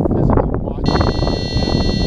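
A steady, high-pitched electronic beep from the 3DR Iris+ quadcopter's buzzer starts about a second in and holds, consistent with the flight controller's arming tone. Under it runs a loud low rumbling noise close to the microphone.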